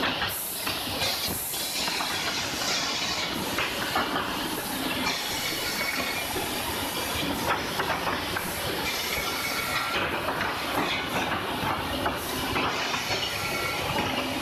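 Woodworking machinery, including planers for short wooden blanks, running steadily: a dense, even hiss with frequent knocks and clatter of wood pieces.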